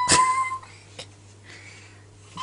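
A toddler's long, high squeal held on one nearly steady pitch, stopping about half a second in, with a sharp knock near the start; then quiet apart from a single click about a second in.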